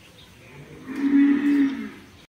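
A single held animal call, lasting just over a second, steady in pitch and dipping slightly as it fades.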